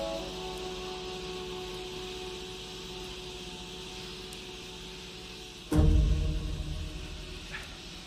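Film score with slow, held sustained notes, then a sudden loud low hit about six seconds in that fades away over the next two seconds.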